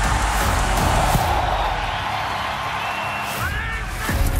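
Large football stadium crowd cheering as the ball is kicked off, over a background music track. The cheer swells in the first couple of seconds and then eases.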